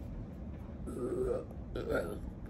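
A woman's voice making two short, wordless throaty sounds, about a second in and near the end, over a steady low background rumble.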